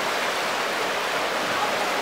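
River water rushing over rocks in a steady, even roar. The river is rising as a flash flood arrives.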